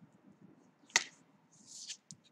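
A single sharp click about a second in, then a short swish of a paper sheet being slid across the drawing surface near the end.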